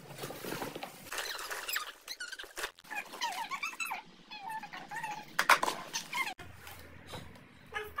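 Fabric rustling as bedding and clothes are stuffed into a zippered cloth bag. High, squeaky chatter runs through the middle, and there are two sharp knocks a little after the halfway point.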